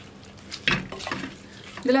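Spatula stirring and scraping through a coconut-coated drumstick stir-fry in a heavy pot, over a faint sizzle. There is a brief louder scrape a little under a second in.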